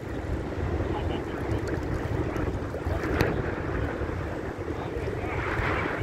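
Wind buffeting the microphone over choppy shallow sea water, a steady rushing noise with a single brief click about three seconds in.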